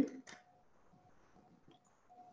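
The tail of a man's spoken word, then near silence with only faint room tone.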